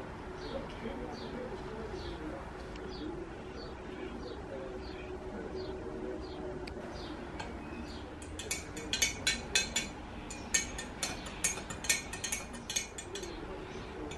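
A metal teaspoon clinking rapidly against the sides of a glass tumbler as it stirs liquid, a quick run of sharp clinks through the second half. Before that, faint bird calls with a low cooing are heard in the background.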